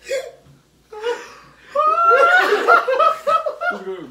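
Young men laughing hard. There are short bursts early on, then a long loud fit of rapid, pulsing laughter from just before two seconds in until near the end.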